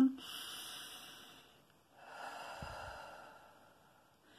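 A woman taking one last slow, deep breath: a long breath in, a short pause, then a long breath out, each lasting about one and a half seconds.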